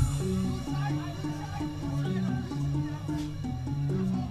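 House music from a DJ mix over a club sound system. The heavy kick drum and bass drop out right at the start in a breakdown, leaving a repeating riff of short held synth notes.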